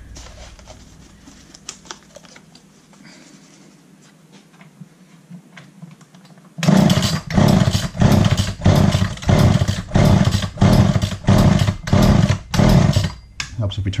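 A few faint handling clicks, then about six and a half seconds in a Poulan 2000 chainsaw's two-stroke engine starts being cranked hard on its recoil starter: loud, evenly repeated pulses about two a second, the engine not yet caught after its carburetor rebuild.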